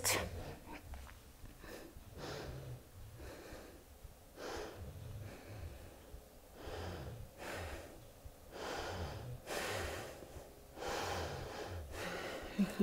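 A woman's slow, faint breathing, deep inhales and exhales coming about every two seconds while she holds a twisting lunge.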